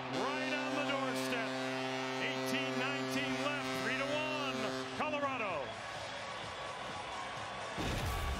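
Arena goal horn blaring in one steady note over a cheering crowd, cutting off about five and a half seconds in as the crowd noise carries on. A broadcast transition swoosh comes at the very end.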